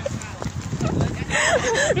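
Teenagers' voices talking, starting about halfway through, over a steady low rumbling noise on the phone microphone.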